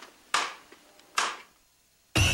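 Two hammer blows on red-hot steel on an anvil, a little under a second apart, each with a short ringing fade.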